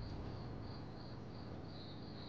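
Crickets chirping in short, evenly repeated pulses, a few a second.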